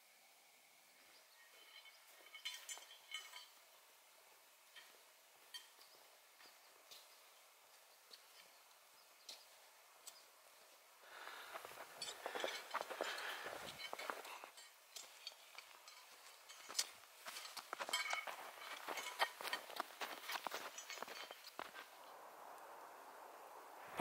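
Faint scattered clicks at first, then from about halfway in a hiker's boots crunching steadily through snow, step after step.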